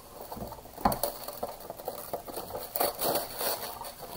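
Clear plastic wrap around an RC buggy's body shell crinkling and rustling irregularly as it is handled.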